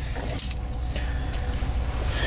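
1983 Jeep Wagoneer's engine idling, heard from inside the cabin as a steady low rumble, with a few light clicks about half a second in.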